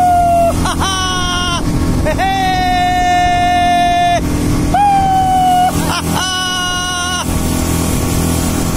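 A man's voice letting out five long, held, high-pitched cries, the longest lasting about two seconds, over the steady drone of a speedboat's engine.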